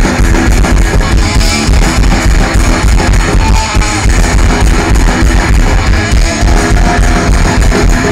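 Punk rock band playing live through a stage PA: electric guitars strumming over a drum kit beat in an instrumental passage, loud and continuous.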